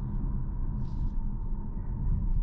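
Cabin noise inside a Hyundai Tucson plug-in hybrid driving on electric power: a steady low road and tyre rumble, with a faint steady tone above it.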